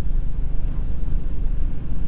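Motorcycle engine running steadily at cruising speed on the highway, with a low rumble of wind and road noise buffeting the microphone.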